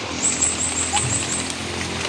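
Rural outdoor ambience: a steady hiss with a quick run of about six high, thin chirps during the first second and a half.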